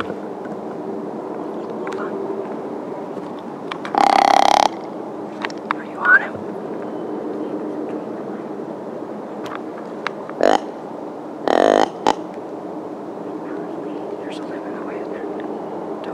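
Deer grunt call blown by a hunter to draw in a whitetail buck: three short, loud grunts, a longer one about four seconds in and two shorter ones close together later, over a steady low hum.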